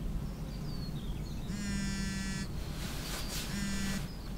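A phone ringing: one buzzy electronic ring about a second long, then a second ring starting near the end.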